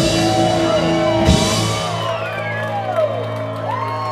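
Live rock band playing the last bars of a song, with drums and guitars ending on a final crash about a second and a half in. A low note rings on after it while the crowd whoops and shouts.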